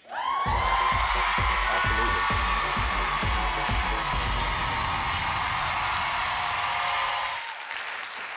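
Dramatic title-sequence music for a game-show segment: a rising whoosh, then a sustained synth chord over a run of deep bass beats, fading out near the end.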